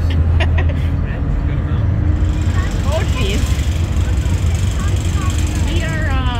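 Car ferry's diesel engines running with a steady, deep low rumble as the boat pulls away from the dock.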